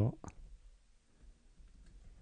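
A few faint clicks of a computer keyboard as a line of code is typed and an autocomplete suggestion is taken.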